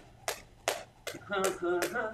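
Jump rope skipping: the rope slaps the mat floor in an even rhythm of about two to three strikes a second.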